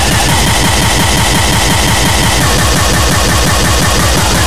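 Breakcore track: fast, heavily distorted kick and bass pulses repeating several times a second under a dense, buzzing wall of noise.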